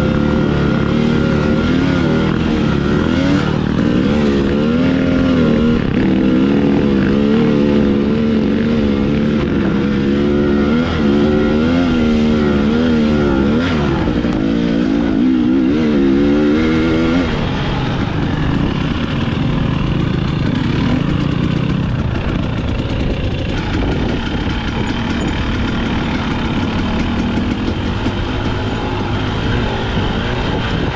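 Single-cylinder two-stroke engine of a Husqvarna TX300i dirt bike under way on a trail, its pitch rising and falling as the throttle is worked. About seventeen seconds in, the note drops and turns rougher for the rest of the stretch.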